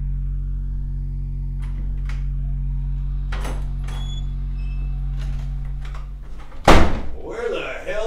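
A wooden front door unlatched with a few light clicks and swung open, then shut with a loud slam nearly seven seconds in, over a low steady drone.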